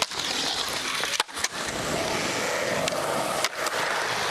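Skateboard wheels rolling over concrete: a steady rolling rush, broken briefly a couple of times by short clicks and gaps.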